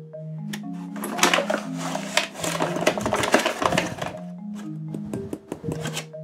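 Light background music of soft marimba-like mallet notes. In the middle, for about three seconds, a rustling, scraping noise with small clicks as a measuring cup is scooped through flour in a paper bag.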